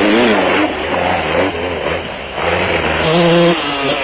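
Off-road race vehicle engines revving hard at speed, the engine pitch rising and falling repeatedly. About three seconds in, a steadier engine note is held briefly.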